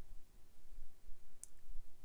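Quiet pause in speech: low room tone, with one brief faint mouth click about one and a half seconds in.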